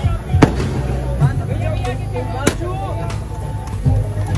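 Two sharp pops from confetti shooters, about two seconds apart, over background music and voices.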